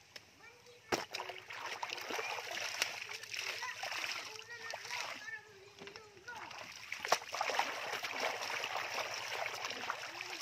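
Clothes being washed by hand in a shallow stream: wet cloth splashed, wrung out and dipped, with water running and dripping off it over the steady sound of the stream. Two sharp splashes stand out, about a second in and about seven seconds in.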